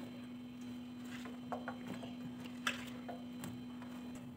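Sliced red onion being dropped by hand into a steel bowl of gram flour: faint soft pats and a few light clicks, over a steady low hum.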